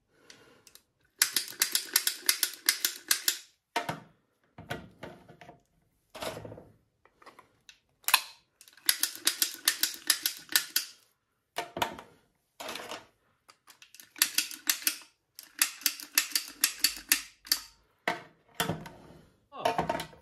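Rapid runs of sharp mechanical clicks from a hand-held, trigger-operated filling gun being pumped as it pushes ground-meat filling into cannelloni tubes. The clicks come in bursts of a second or two with short pauses between.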